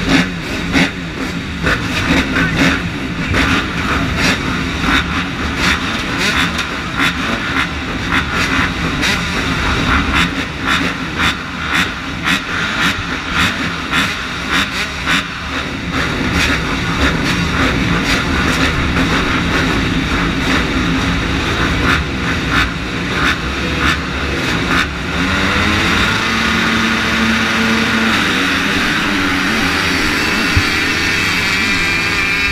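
A line of motocross dirt bikes at the starting gate, engines running with uneven throttle blips. About four seconds before the end the engines rise together to steady, high revs as the pack starts.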